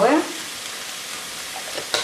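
Chopped vegetables and tomato frying in oil in a multicooker bowl, a steady sizzle. A short click comes near the end.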